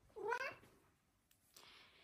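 A cat gives one short meow, rising in pitch, just after the start.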